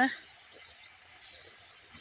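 Steady hiss of irrigation water running through the garden.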